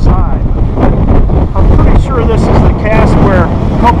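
Strong wind buffeting the microphone in a steady low rumble, with a man's voice partly buried under it.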